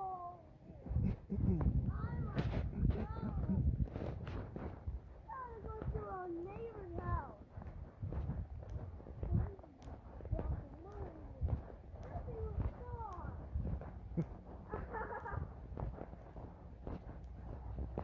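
Indistinct, wordless voice sounds coming on and off, over a steady low rumble.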